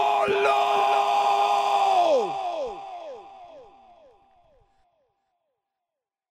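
A long yelled 'polloooo', one harsh voice held on a single pitch for about two seconds. It then breaks into a string of echoes that each slide down in pitch and fade away by about five seconds in.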